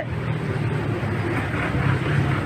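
Steady low engine noise of a motor vehicle running nearby, with no speech over it.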